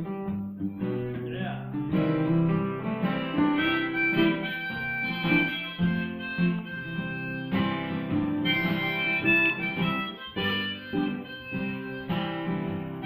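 Instrumental break on two strummed acoustic guitars, with a harmonica played in a neck rack carrying held melody notes over them.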